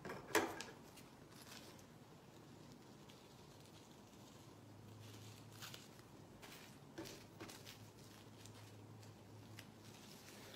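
Scissors cutting through a thin plastic trash bag liner, mostly quiet. There is one sharper snip just after the start, then a few faint snips and plastic rustles.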